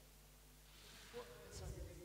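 Quiet room tone, then faint, soft conversational speech starting about halfway through, with a brief low thump near the end.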